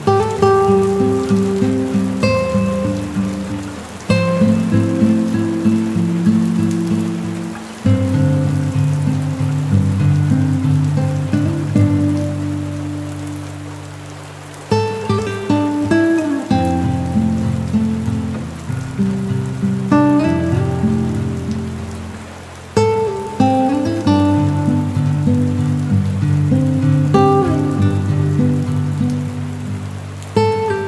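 Slow, soft instrumental music of struck or plucked notes that ring out and fade, in phrases a few seconds long, over a steady hiss of rain on a windowpane.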